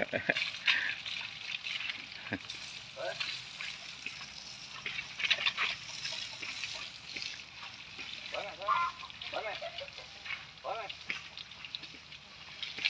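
Water spraying from a garden hose onto an elephant calf and its mother, a steady hiss.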